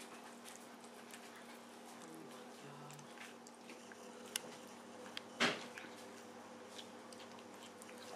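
A cat chewing soft melon chunks, with many small wet clicks of its mouth and teeth. A sharp louder knock comes about five and a half seconds in, after a smaller one a second earlier.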